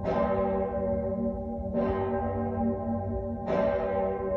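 A large church bell in the Lange Jan tower tolling, struck three times about every 1.75 seconds, each stroke ringing on until the next.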